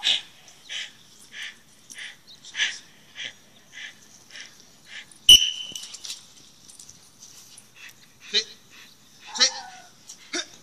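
A dog on a leash whining in a run of short, high-pitched cries, about two a second at first, with a sharp snap a little after five seconds in and two louder yelps near the end.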